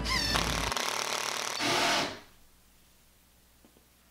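Power drill driving a screw through a black-painted flat steel bracket into the top of a wall, running for about two seconds and then stopping sharply, followed by faint room tone.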